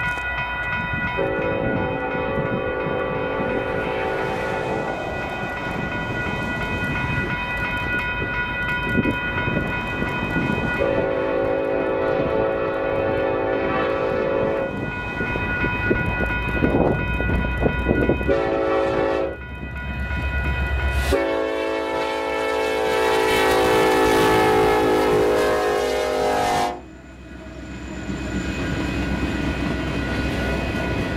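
Union Pacific SD70AH diesel locomotive's air horn sounding the grade-crossing signal, long, long, short, long, as the train approaches the crossing. The last long blast falls slightly in pitch as the locomotive passes and cuts off suddenly, leaving the rumble of freight cars rolling by on the rails.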